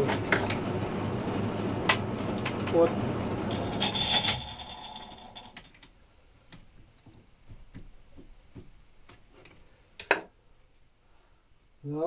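Metal lathe running steadily, then switched off about four seconds in and running down. After that come light metallic clicks and clinks as the chuck key works the three-jaw chuck, and one sharp knock a couple of seconds before the end.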